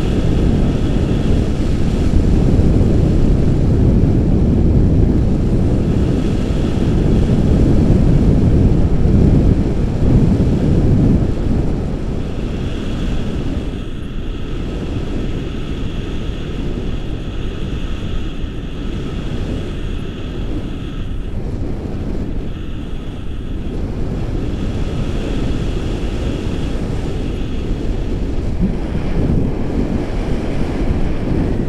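Wind buffeting the camera microphone in flight under a tandem paraglider: a dense, rumbling rush that is loudest for the first dozen seconds, then eases a little. A faint high whistle comes and goes.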